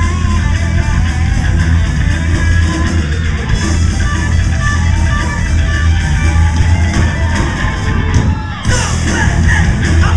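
Thrash metal band playing live, heard loud through a camera microphone in the crowd: distorted electric guitar and bass over drums. The music breaks off briefly about eight seconds in, then the full band comes back in.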